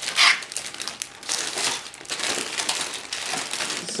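Plastic bag crinkling as the model kit sprues packed in it are handled, loudest in a brief burst just after the start, then an irregular rustle.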